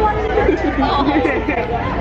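Only speech: several people talking and chattering close by, voices overlapping, with crowd chatter behind.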